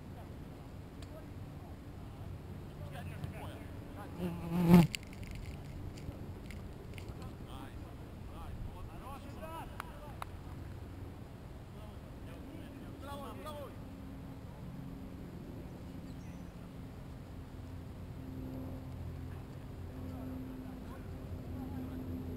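Players' voices calling out across an open soccer field. One short, loud shout close by comes about five seconds in, with fainter distant shouts a few seconds later.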